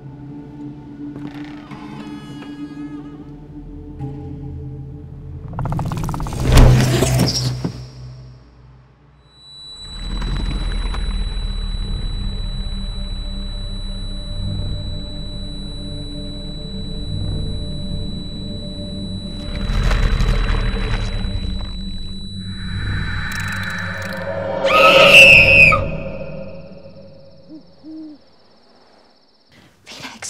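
Horror film soundtrack: a low droning score with a loud swelling hit about a third of the way in, then a deep rumble under a thin steady high whine, and a second loud swell of shrill, eerie tones near the end.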